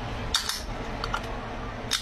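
Metal can's pull tab being worked to open the lid: a sharp metallic click and scrape about half a second in, then a couple of fainter ticks.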